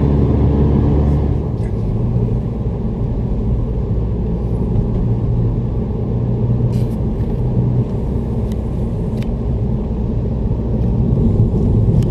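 Road and engine noise of a moving car heard from inside the cabin: a steady low rumble, with a few faint ticks.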